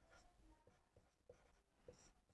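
Near silence, with only a few faint squeaks of a marker writing on a whiteboard.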